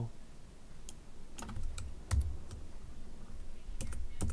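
Irregular keystrokes on a computer keyboard, a handful of separate taps with pauses between, as keys are pressed again and again on a keyboard whose batteries have gone flat.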